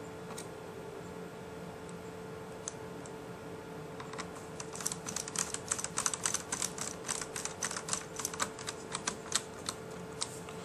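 A hand screwdriver driving a small screw into a laptop's frame: a quick, irregular run of sharp clicks beginning about four seconds in, over a faint steady hum.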